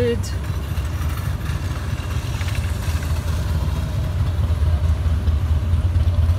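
A steady low rumble, like machinery or an engine running, slowly getting louder.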